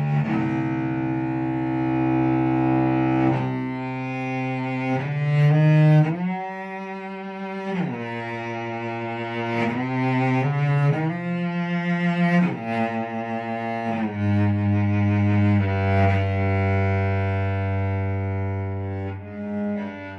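Solo cello played with the bow, a slow improvised line of long, sustained notes. It climbs into a higher register about six seconds in, then settles on one long, low held note from about fourteen seconds.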